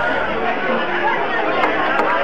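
Crowd chatter: many people talking over one another in a packed bar.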